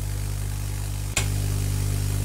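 Base-fed vacuum tube Tesla coil running off unrectified AC from a microwave oven transformer through a ballast, giving a steady mains-frequency buzz with a hiss from the small spark streamers at its top. About a second in there is a brief click, after which it runs slightly louder.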